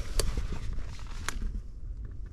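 Footsteps through dry leaf litter, with two sharp snaps of twigs or leaves underfoot, over a low steady rumble.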